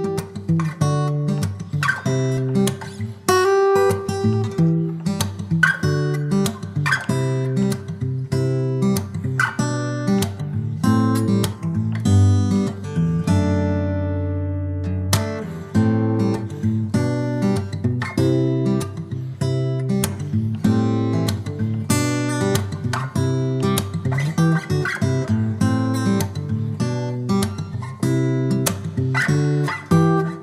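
Background music on acoustic guitar: picked notes at an even pace, with one longer held chord about halfway through.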